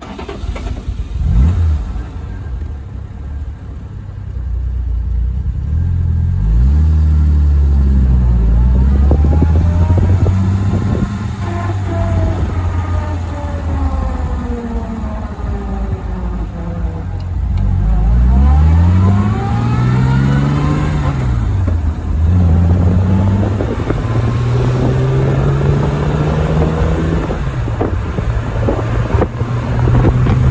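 Jaguar E-Type's 3.8-litre XK straight-six catches on the starter about a second in, then runs. It pulls away with its note climbing and dropping through the gears as the car accelerates on the road.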